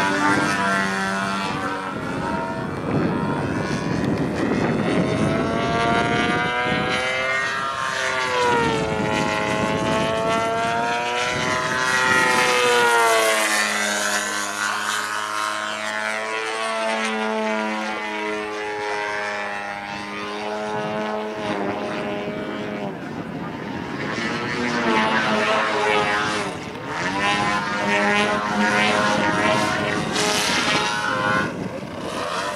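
Gasoline engine of a large RC Extra aerobatic model plane (GP 123) running hard through aerobatic manoeuvres, its pitch sweeping up and down with throttle and passes. In the middle it settles for several seconds to a steady, lower tone before climbing in pitch again.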